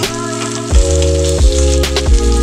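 Tomato slices sizzling as they fry in oil in a pan, under background music whose chords change every second or less.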